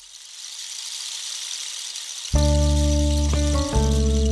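A high hiss swells for about two seconds, then background music comes in suddenly with held deep bass notes and sustained chords.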